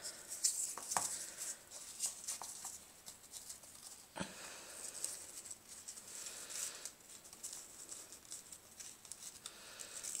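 Faint rustling of a paper strip being handled and knotted around a bundle of cinnamon sticks, with a few small clicks, the sharpest about a second in and about four seconds in.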